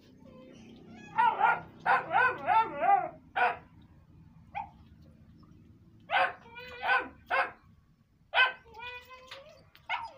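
A dog barking off-camera: a quick string of about half a dozen barks in the first few seconds, then a few more spaced barks later on.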